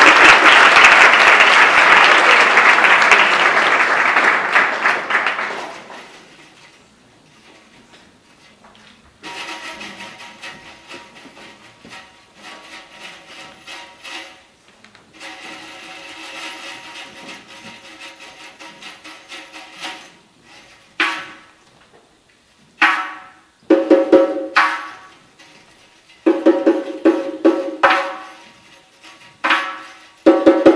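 Applause fades away over the first five seconds. Then a doyra, the Uzbek frame drum with jingling metal rings, is played solo: soft rolls with a ringing shimmer at first, building to loud, sharp strikes in clusters in the last third.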